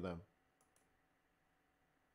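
Two faint computer mouse clicks in quick succession, switching a chart's timeframe, in an otherwise near-silent room.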